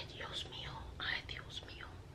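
A woman whispering under her breath in two short stretches.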